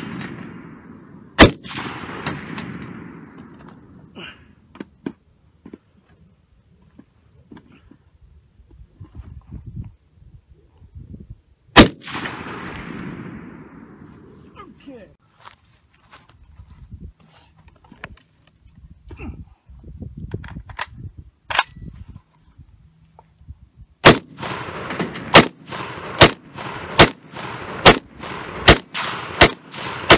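PTR-91 .308 semi-automatic rifle firing: a single shot, small handling clicks, a second single shot, then more clicks while it is set down and reloaded, and finally a rapid string of about eight shots, each with a short echo.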